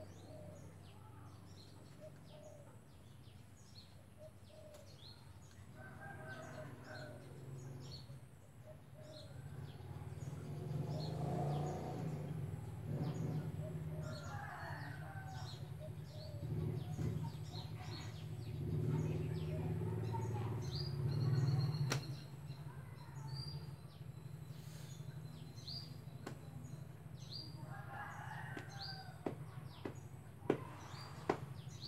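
Outdoor birdsong: small birds chirping again and again in short high notes, with a longer pitched call every several seconds. Under them a low rumble swells in the middle and cuts off suddenly about two-thirds of the way through.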